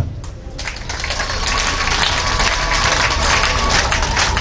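Audience applauding. The clapping starts about half a second in, builds over the next second and then holds steady.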